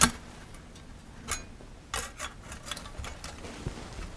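Thin titanium wood-stove panels clicking and tapping lightly against one another as a side panel is slotted into place, a few scattered clicks.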